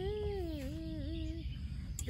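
A voice holding long, sung notes that slide down in pitch, stopping about three quarters of the way through; a sharp click at the very end.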